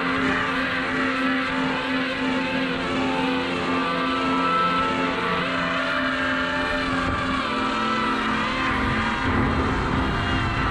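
A DJI Mavic Air's propellers whining, heard from the GoPro hanging beneath it, with several motor pitches warbling up and down about once a second. The drone is working hard to steady the swinging GoPro load.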